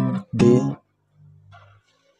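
An acoustic guitar chord strummed in two short strokes and quickly damped, with a faint low string note ringing on briefly afterwards.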